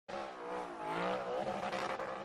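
Audi R8 drift car's engine revving up and down as it slides, with tyres squealing on wet tarmac.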